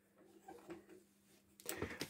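Quiet handling sounds of a vacuum cleaner's power cable being wound onto the cable hooks on its handle, with a couple of faint light ticks.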